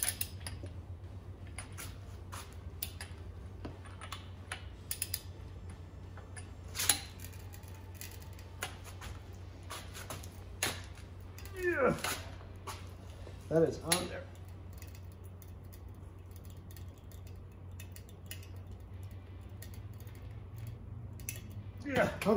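Scattered metallic clicks from a long torque wrench and socket as an LS engine's new harmonic balancer bolt is pulled through its final torque angle, with two strained grunts from the man pulling on it about twelve and fourteen seconds in. A steady low hum runs underneath.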